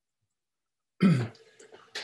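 A man clearing his throat once, about a second in, with a short falling rasp.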